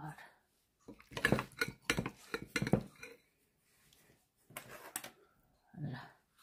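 Metal spoon clinking and scraping against a glass bowl and ceramic plates as food is served, in a run of clatters from about a second in and another short burst near the end.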